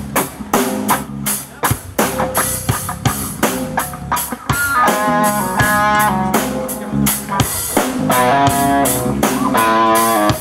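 Live rock band playing through a stage PA: a drum kit keeps a steady beat and an electric guitar joins with a line of single notes about halfway through.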